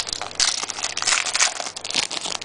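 Foil trading-card pack wrapper crinkling as it is handled and opened, a dense crackling run for just over a second.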